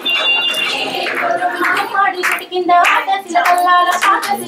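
Singing mixed with voices: sung notes held for a moment at a time, over sharp percussive taps.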